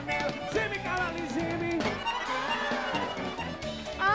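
Live forró band playing an instrumental passage: a melody line with a briefly held note over a steady bass.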